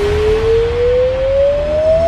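Dubstep track in a sparse breakdown: a single synth tone glides slowly and steadily upward in pitch, like a siren, over a quiet low bass, with no drums.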